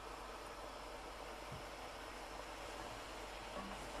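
Faint, steady hiss of sliced mushrooms frying in butter in a pot.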